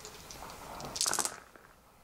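A handful of six-sided dice thrown onto the tabletop game mat, clattering briefly about a second in after a few light clicks.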